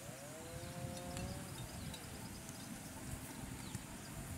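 Water buffalo lowing once: a single drawn-out call that rises in pitch and then holds for over a second, over a steady low rumble.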